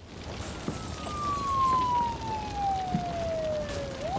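A siren wail in the opening of a UK drill music video: one long tone falling steadily in pitch over about three and a half seconds, above a low hiss.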